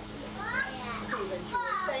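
Indistinct talking in a room, including a child's high voice, over a faint steady low hum.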